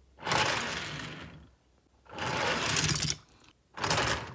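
A motorised toy train engine whirring and clattering along plastic track in bursts of about a second each, with short silences between. There are two bursts, and a third starts near the end.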